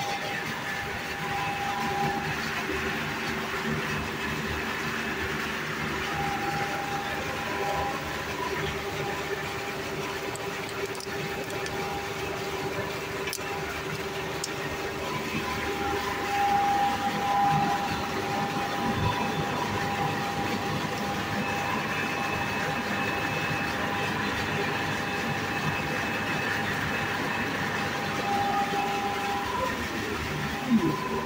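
A 5 hp capacitor-less single-phase induction motor running steadily just after being switched on at its starter: a continuous even hum with steady whine tones.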